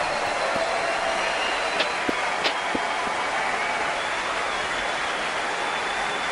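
Large concert-hall audience applauding and cheering as a song ends, a steady wash of clapping with a few whistles on top.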